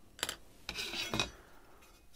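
Tools being handled on a workbench: a pencil is set down and a steel ruler picked up, giving a light click, then a short metallic clinking and scraping with a sharp tick about a second in.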